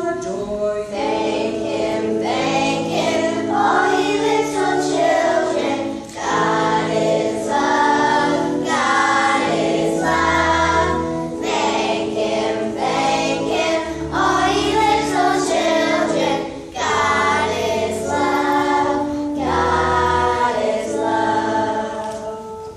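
A children's choir singing a hymn-style song together, over instrumental accompaniment with held chords and a repeating bass line.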